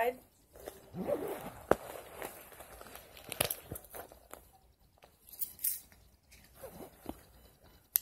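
Rummaging through a small purse pocket: rustling and crinkling of the items inside, with scattered sharp clicks and taps as things are handled and pulled out.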